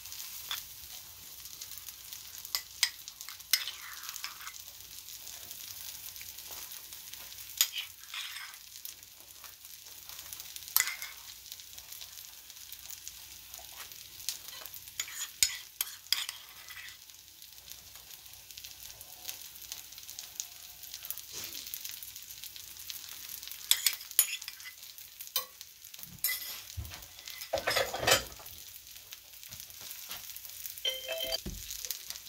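Food sizzling steadily in a cast iron skillet, with scattered clicks and scrapes of a utensil as mashed avocado is spread over toast in the pan.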